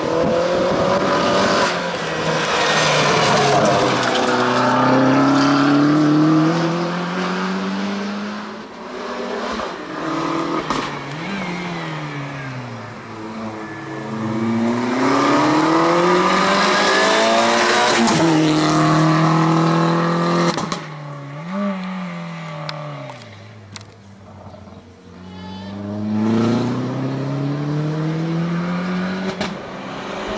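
Opel Corsa slalom car driven flat out through a cone slalom. The engine repeatedly revs up through the gears and then drops sharply as the driver lifts and brakes between the gates, with brief throttle blips in between.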